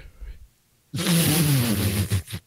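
A man laughing loudly and breathily for about a second, starting about a second in, with a harsh hiss over the laugh.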